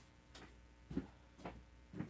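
Footsteps on a hard floor, about two steps a second, the loudest about a second in.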